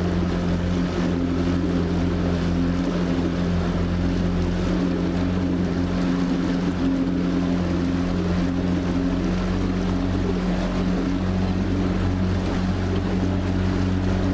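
Boat motor running at a steady speed, a constant low hum that does not change pitch.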